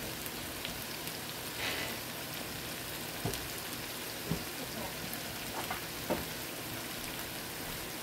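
Chicken and vegetables cooking in a copper pan: a steady sizzling hiss with a few brief pops.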